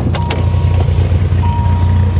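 The 8.0 L V10 of a 1993 Dodge Viper RT/10 idling with a steady low rumble. The door latch clicks at the start as the door is opened, and a steady high warning tone from the car comes on right after.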